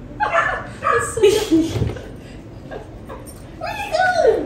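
A dog whining and yipping in several short calls that slide up and down in pitch, with a pause about halfway through.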